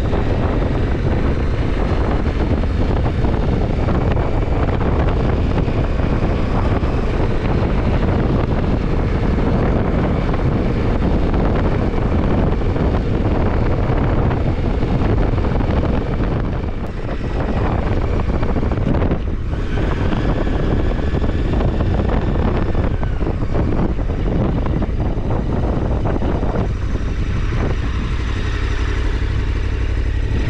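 KTM 1290 Super Adventure R's V-twin engine running at low road speed while riding, mixed with wind rushing over the microphone. The level is steady apart from a brief dip about halfway through.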